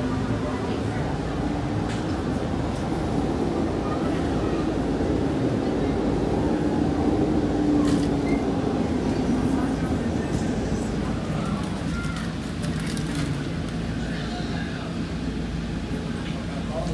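Interior of a moving city bus: steady engine and road rumble with a low drone that swells and rises a little in pitch around the middle, then falls back.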